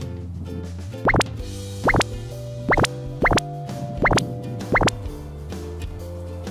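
Light background music with a series of about seven short, loud 'bloop' sound effects, each a quick upward sweep in pitch, coming at irregular intervals.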